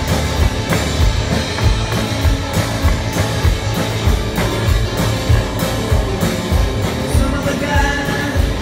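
Live rock and roll band playing loudly through a PA: electric guitars, electric bass and a drum kit keeping a steady beat. Singing comes in near the end.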